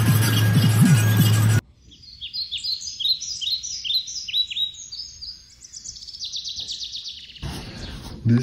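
Background music with a steady low beat cuts off abruptly about one and a half seconds in. A small bird then sings a run of quick high chirps, each sliding downward, ending in a fast trill near the end.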